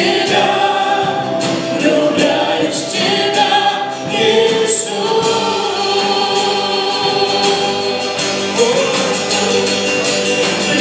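A live worship band singing a Christian song: a woman's lead voice with several other voices in harmony, over strummed acoustic guitar, bass, keyboard and a drum kit keeping a steady beat.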